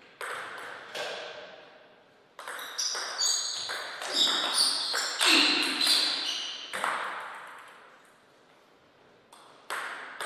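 Table tennis ball clicking off rackets and the table, each hit ringing in the hall. A couple of single bounces at first, then a quick run of hits in a rally from about two and a half seconds in to nearly seven seconds, and two more bounces near the end.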